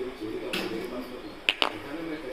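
A few sharp clicks, one about half a second in and two close together about a second and a half in, over faint low voices.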